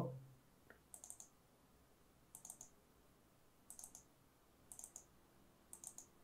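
Faint computer mouse button double-clicks, five short clusters roughly a second apart, as folders are opened in a file dialog.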